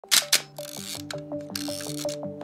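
Camera shutter sound effect, two quick sharp clicks just after the start, over background music with a stepping melody. Two longer hissing stretches follow, one in the middle and one near the end.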